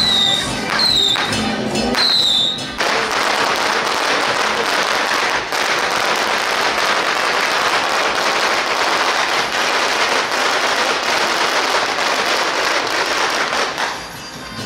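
A long string of firecrackers going off in a dense, continuous crackle of rapid pops, starting suddenly about three seconds in and stopping just at the end. Before it, short high falling notes repeat about once a second.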